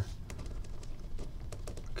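A pen writing by hand on a pad of grid paper: a soft, irregular run of small scratching and tapping strokes as a word is written out.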